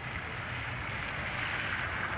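Steady hiss of sleet and wet snow falling onto wet pavement, with a low rumble of wind on the microphone.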